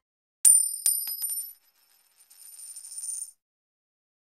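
A coin dropped onto a hard surface, used as an intro sound effect. A sharp ringing metallic strike is followed by a few bounces coming closer together, then a rattle that grows and cuts off suddenly as the coin settles.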